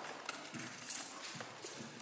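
A few faint, irregular clicks and light knocks over quiet room hiss.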